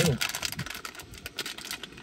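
Plastic snack wrapper of a protein brownie crinkling and crackling as it is pulled open by hand, a quick run of small crackles.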